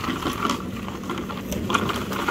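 Small pickup truck's engine running low and steady while it takes up the tow chain on a fallen limb, with a few faint crackles over it.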